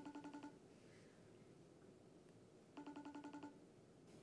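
iPhone ringing on a FaceTime video call: two short trilling rings, one at the start and one about three seconds later.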